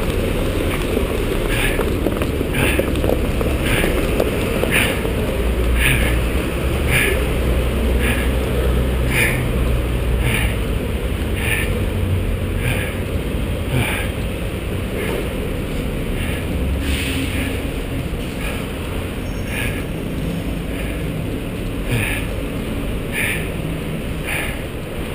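Running heard through a chest-mounted action camera: a swishing rustle about once a second from the runner's strides, over a steady low rumble of wind and city traffic. The rumble is heavier for several seconds in the middle.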